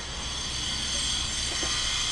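Steady background noise with no distinct event: a low rumble under an even, high hiss.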